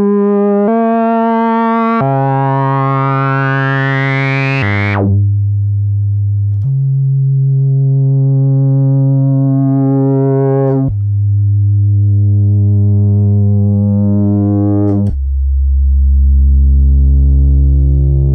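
Moog Sub 37 analog monosynth playing about six sustained single notes that step down in pitch. Each note grows brighter over a few seconds as the filter envelope sweeps the filter open. With the envelope in reset mode, each new key press restarts the sweep from dull.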